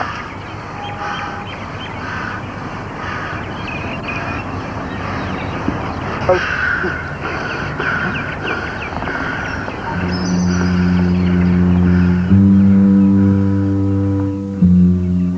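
Crows cawing again and again over a steady rushing outdoor noise. About ten seconds in, music enters with held low chords, which step up to a new chord a couple of seconds later.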